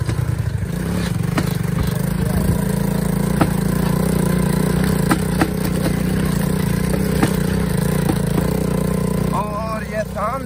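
Motorcycle rickshaw engine running at a steady speed under way, with sharp knocks and rattles every second or two as it rides over the bumps of a dirt farm track.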